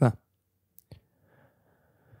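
A single sharp click on a laptop, just under a second in, as the next message is brought up.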